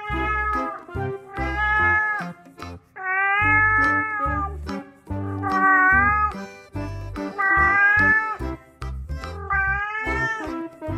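Music: a rhythmic bass line under a melody of long, slightly sliding held notes, with cat meows.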